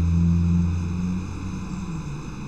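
A man's low, drawn-out hum ("mmm") as he hesitates in thought. It trails off about a second in and leaves faint steady room hiss.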